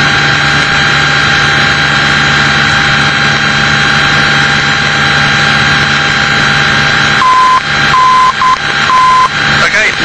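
Steady drone of a Piper Warrior's engine in the cabin. Near the end, the Trent VOR's Morse ident comes in as a steady tone keyed dash, dash-dot, dash: T-N-T, which confirms that the nav radio is tuned to the right station.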